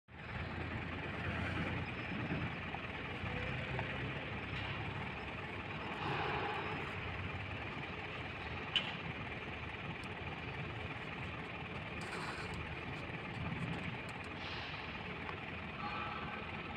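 Steady mechanical running noise with a low hum, and a single click near the middle.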